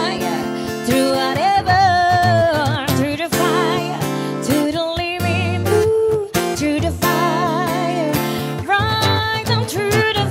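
A woman singing long held notes with wide vibrato, accompanied by a guitar.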